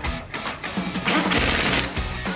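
Pneumatic impact wrench hammering a bolt on a car's front wheel hub assembly in a rapid rattling burst just under a second long, starting about a second in, as the bolt is run in before final torquing.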